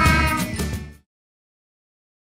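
A short music jingle for the logo card, with gliding high tones, that cuts off suddenly about a second in, leaving silence.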